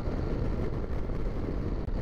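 Steady rush of wind and road noise from a Yamaha FJR1300 sport-touring motorcycle cruising at highway speed, heard from the rider's position.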